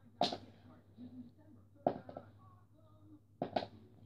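Plastic highlighter markers being flipped and landing on a hard board: three sharp clacks, roughly a second and a half apart, the last a quick double.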